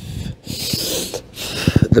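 A man breathing hard while holding a plank under load, with one long forceful breath about half a second in and a shorter, rougher breath near the end.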